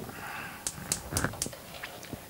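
Gas range burner being lit: a soft hiss of gas, then several sharp igniter clicks at uneven spacing as the flame catches.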